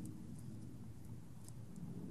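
Quiet room hum with faint handling noise and a couple of soft ticks as fingers press a small adhesive glitter stone onto a paper treat bag.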